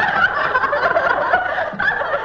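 A woman laughing, loud and high-pitched.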